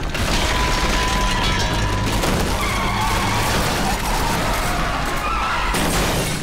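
A dense, loud action-film sound mix of car and traffic effects with tyres squealing.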